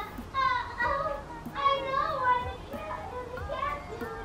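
A young child's high voice chattering in short phrases, with music in the background.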